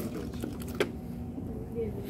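Light clicks and knocks of plastic cups being handled, the sharpest about a second in, with faint talking in the background.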